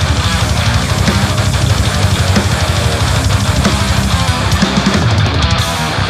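Death metal music: heavily distorted electric guitars playing a fast riff over a drum kit.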